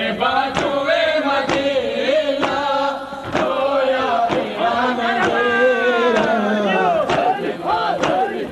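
Male voices chanting a nauha together, punctuated by sharp, steady slaps about once a second: rhythmic chest-beating (matam) in time with the lament.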